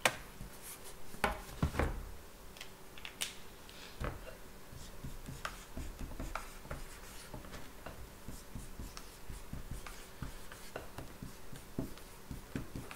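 Marker writing quickly on a handheld whiteboard: a long run of short, faint scratchy strokes as one short word is written over and over as fast as possible. A few sharper knocks in the first two seconds as the board is lowered and handled.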